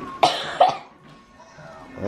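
A person coughing twice in quick succession, then faint background music.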